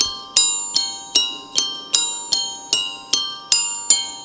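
Glockenspiel played on its own in a steady pulse of single struck notes, about two and a half a second, each one ringing and fading before the next as the melody moves between a few pitches.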